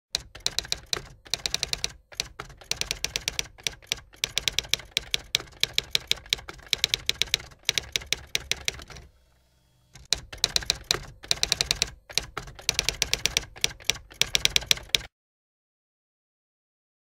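Typewriter keystroke sound effect: rapid runs of key clacks, broken by a pause of about a second just past the middle, stopping about a second before the end.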